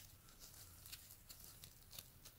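Near silence, with a few faint, scattered ticks and rustles of leather-gloved fingers turning a silver dime.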